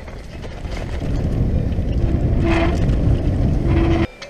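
Mountain bike descending a rough forest singletrack, heard through the mounted camera's microphone: wind buffeting and the rumble and rattle of tyres and frame over the trail, getting louder about a second in. Two short squeals ring out in the middle and near the end, and the sound cuts off suddenly.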